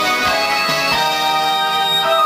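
Karaoke backing track of a Korean pop song playing its instrumental part, held chords and a melody line on keyboard-like instruments, with no voice singing.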